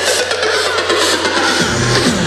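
Loud electronic dance music from a live DJ set over a festival sound system. The bass cuts out for a breakdown while a sweep falls in pitch, and the full bass comes back in near the end.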